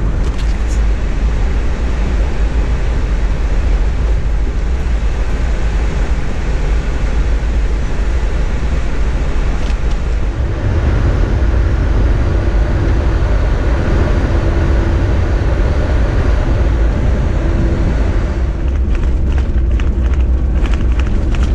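A vehicle driving on a rough unsealed dirt road: a loud, continuous low rumble of tyres and road noise that grows slightly heavier about halfway through, when a faint steady hum also comes in.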